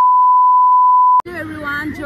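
Loud, steady, single-pitch test-tone beep played with a TV colour-bars test pattern, cutting off suddenly with a click a little over a second in.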